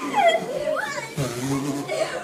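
Several children talking and calling out over one another, their high voices sliding up and down in pitch.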